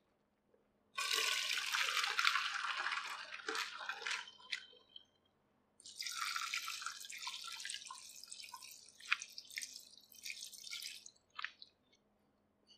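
Water pouring and splashing over boiled noodles in two spells of a few seconds each, with drips falling between and after them.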